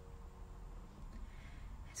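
A quiet pause in a soft acoustic song: faint hiss and room tone, with the last plucked-string note dying away in the first half second.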